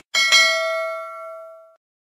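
Notification-bell sound effect from a subscribe animation: a bright bell ding, struck twice in quick succession, ringing out and fading over about a second and a half.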